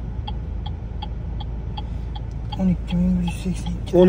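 A car's turn-signal indicator clicking evenly, about two and a half clicks a second, over a steady low hum inside the car's cabin.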